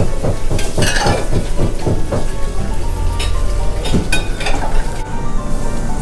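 A person slurping thick ramen noodles in a series of short, irregular, wet sucking bursts.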